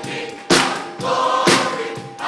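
A choir sings a gospel worship song with musical accompaniment. A strong beat falls about once a second.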